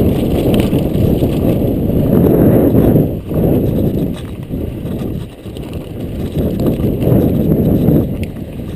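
Mountain bike rolling fast down rocky, gravelly singletrack: a loud, steady rumble of tyres over loose stones, with the bike rattling. The noise dips briefly about three and five seconds in.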